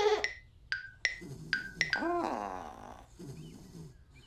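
Cartoon soundtrack: a few short, quickly fading struck notes like a xylophone in the first two seconds, then a wavering pitched cartoon voice or sound effect about two seconds in.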